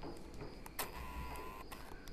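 Carrom coins and striker clicking on a wooden carrom board: a few light knocks, with one sharp click a little under a second in. A short faint tone sounds in the middle.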